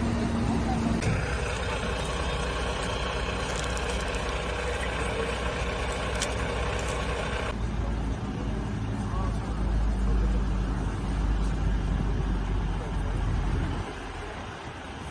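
Vehicle engines and road traffic running steadily, with voices in the background. About seven and a half seconds in, the sound changes abruptly to a deep steady rumble.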